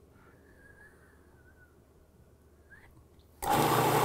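Near silence, then a food processor's motor switches on abruptly about three and a half seconds in and runs steadily, pulsing the chopped basil, garlic and pine nuts.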